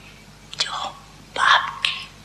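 A woman's voice speaking softly in two short, breathy phrases.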